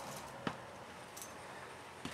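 Quiet small-room tone with a faint click about half a second in and a fainter high tick a little after one second.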